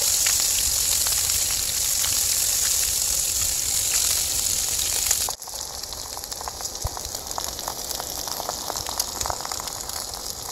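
Ham slices sizzling in a frying pan with a loud, steady hiss. A little over five seconds in, it drops suddenly to a quieter sizzle with scattered pops and crackles as eggs fry alongside the ham.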